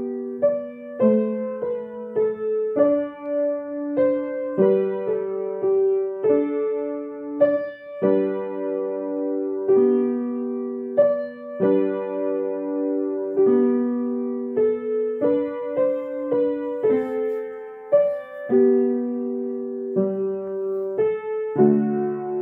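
A beginner playing a simple two-handed piece on a Yamaha upright piano: a slow, even melody of single notes with a few two-note chords, each note ringing briefly before the next.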